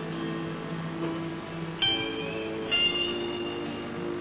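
Background music of held melodic notes, with a sharp new note entering a little under two seconds in and another shortly after.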